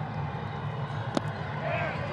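A single sharp pop of a baseball, a slider, smacking into the catcher's leather mitt about a second in, over a steady low stadium hum.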